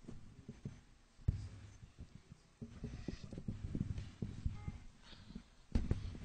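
Faint handling noise from a handheld microphone: irregular low knocks and rustles as the mic is held and shifted, with a slightly louder bump near the end.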